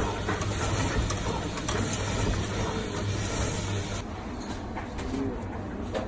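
Electric meat slicer running, its circular blade cutting thin slices of cured meat, with a steady motor hum underneath. The hissy upper part of the sound drops away about four seconds in.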